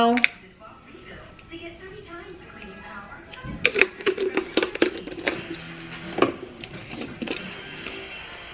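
Dried basil shaken from a plastic spice shaker jar: after a quiet start, a run of quick clicks and taps from about halfway through as the jar is shaken and handled.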